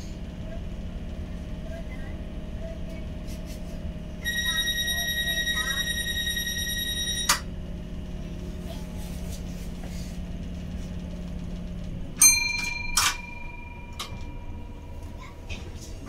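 Interior of a stationary Tyne and Wear Metrocar: the car's equipment hums steadily. A high electronic tone sounds for about three seconds and ends in a clunk. About twelve seconds in the hum stops, and a couple of sharp knocks follow with a ringing tone that fades away.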